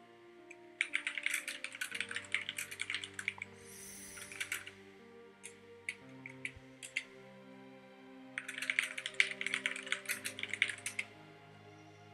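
Typing on a computer keyboard: two quick runs of keystrokes, a few seconds apart, with a few scattered key presses between them, over soft background music.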